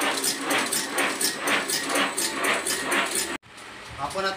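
Automatic agarbatti (incense stick) making machine running, a rhythmic mechanical clatter of about four strokes a second as it rolls paste onto bamboo sticks. It stops abruptly a little before the end.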